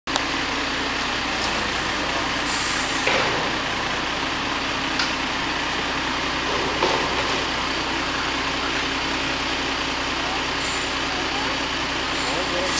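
Garbage truck's diesel engine running steadily as the truck pulls away, with two short hisses of air about two and a half seconds in and near the end, and a few light clanks.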